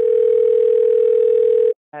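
A single steady electronic beep: one unchanging mid-pitched tone held for nearly two seconds over the thin, hissy sound of a call line, cutting off suddenly near the end.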